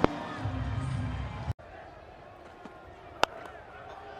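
Crowd murmur at a cricket ground with one sharp crack of bat on ball a little past three seconds in. The sound drops out briefly about one and a half seconds in.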